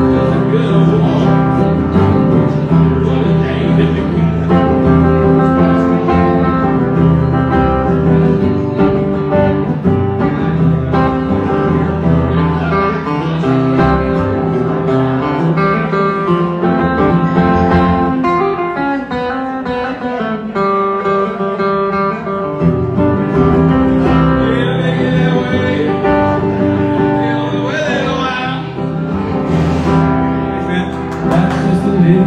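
Acoustic guitar played live in a country-style song, an instrumental stretch with no sung words.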